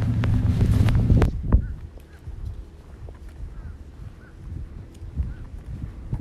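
Wind rumbling on the microphone for about the first second, then footsteps on a paved path with a few faint, short chirps.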